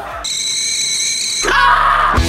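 A steady high-pitched tone for about a second, then a boy's loud yell that glides up in pitch and holds, about one and a half seconds in.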